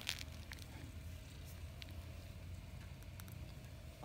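Faint rustling and a few small clicks of a hand stroking a cat's fur close to the microphone, over a low steady rumble.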